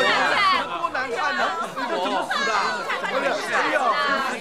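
A crowd of people talking at once, many excited voices overlapping in a large room.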